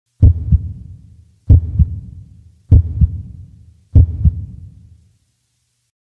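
Heartbeat sound effect: four low double thumps, lub-dub, a little over a second apart, each fading out.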